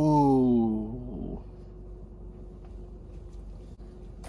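A person's voice: one drawn-out vocal sound about a second long, falling in pitch, followed by a faint steady hum.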